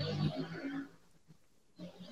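A man's voice making one low, drawn-out vocal sound lasting about a second, then a pause of about a second with next to nothing heard.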